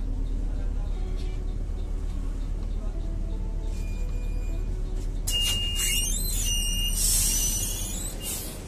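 A city bus's engine running steadily at a stop. From about five seconds in, an electronic warning beeps in short high tones, then a short burst of hiss comes near the end.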